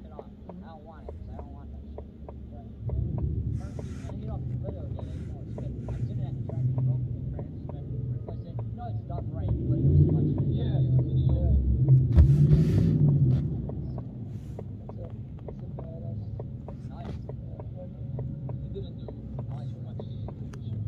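Low car engine rumble that steps up about three seconds in and swells louder for a few seconds around the middle, under muffled voices talking.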